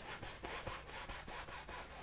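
Paintbrush bristles rubbing across a wet oil-painted canvas in a quick series of short strokes, a faint scratchy brushing.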